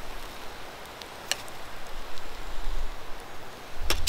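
Kielbasa and broccoli sizzling in a steady hiss on a wire grill grate over hot coals, with a faint tick about a second in and a couple of sharp clicks of metal tongs on the grate near the end.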